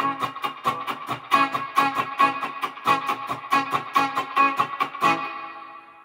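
Electric guitar picked rapidly, about six strokes a second, through a Wampler Faux Spring Reverb pedal with its reverb control turned all the way down and its tone control fully open, into a Fender Mustang I amp; the spring-style 'boing' is less pronounced but still there. The picking stops about five seconds in and the last notes ring out and fade.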